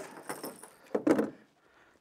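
Handling noise as a hooked smallmouth bass is unhooked by hand: light metallic clinking and rustling, with one louder short scuffing burst about a second in.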